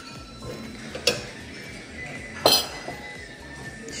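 Ceramic dishware clinking: a white bowl and plate knocking together and on the hard counter, twice, with the second clink louder and ringing. Faint music plays underneath.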